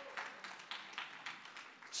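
Faint, steady rhythmic clapping, about four claps a second.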